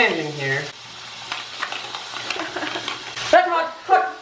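Tap water running from a bathroom faucet into a sink and splashing over hands being washed, a steady hiss with small splashes. It breaks off suddenly near the end.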